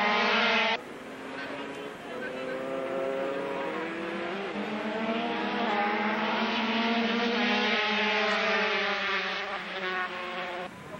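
Several 125 cc two-stroke single-cylinder Grand Prix race bikes running at high revs as the pack passes close, their engine notes rising and falling as the riders shift and throttle through the corner. A loud close pass at the start cuts off abruptly under a second in.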